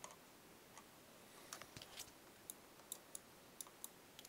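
Faint, scattered clicks of a computer mouse and keyboard, about a dozen short clicks over near-silent room tone.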